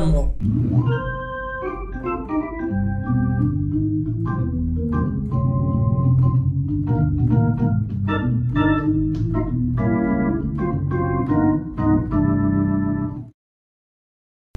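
Pearl River PRK300 digital piano played on its Organ 1 voice: held organ chords with a moving line of notes above them. It cuts off suddenly near the end.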